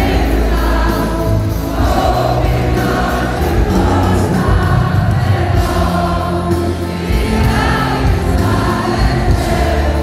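Loud live pop music played over an arena sound system, with many voices singing along like a choir over a steady bass beat.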